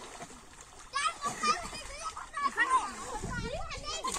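Children shouting and calling out in high voices from about a second in, with water splashing as boys play in a pond.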